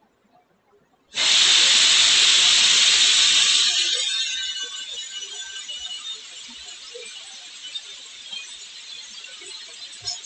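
A loud hiss that starts suddenly about a second in, then eases after a few seconds to a quieter, steady hiss.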